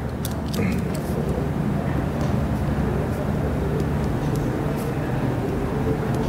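Steady low rumble of background room noise with a few faint light ticks.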